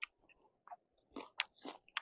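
A person chewing a mouthful of crisp raw cucumber close to the microphone: about six short, faint crunches at uneven intervals.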